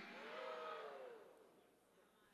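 Near silence in a pause of speech: faint voices in the auditorium fade out about a second in, leaving silence.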